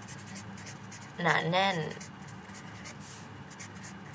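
Felt-tip marker writing on paper: a run of quick, short scratchy strokes as words are written out.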